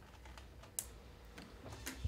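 Faint, scattered clicks of typing on a computer keyboard over quiet studio room tone, with one sharper click just under a second in.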